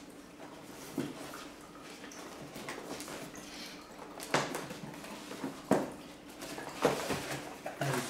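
A cardboard box being handled and turned over on a table: faint rustling and scraping with about four sharp knocks, most of them in the second half.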